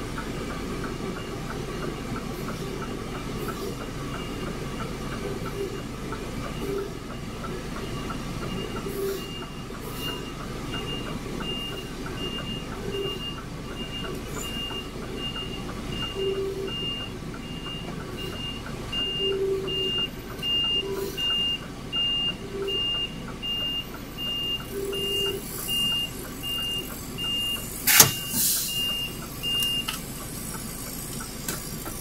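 A semi-trailer truck reversing: its reversing alarm beeps about twice a second over the low running of its engine, the beeps growing louder as the truck backs in to the dock. A sudden loud burst with a short hiss near the end.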